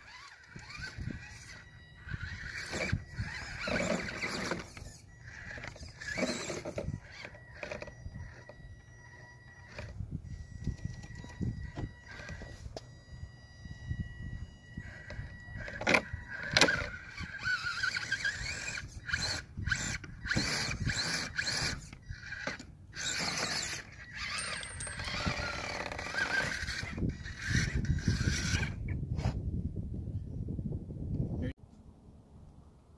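Electric RC rock crawler's small 390 motor and gearbox whining at low speed in stops and starts, with tyres scraping and clicking over rock.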